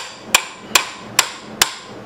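Five sharp metal-on-metal hammer taps, about two a second, each with a brief ring, struck on a pipe wrench gripping a seized spark plug in an old Briggs & Stratton 5S cylinder head, to shock the stuck threads loose.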